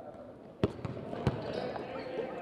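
A basketball bouncing on a hardwood gym floor: two loud bounces with a couple of lighter ones between, starting just over half a second in.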